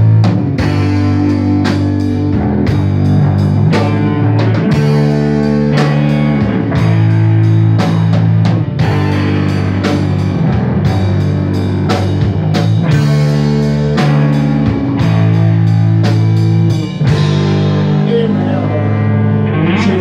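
A rock band playing live: electric guitar, bass guitar and drum kit in an instrumental passage without vocals. Loud, sustained bass-heavy chords change every couple of seconds over steady drum hits.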